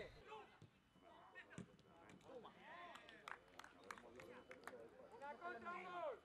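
Faint, distant men's voices calling on a football training pitch, with a few sharp knocks of a football being kicked.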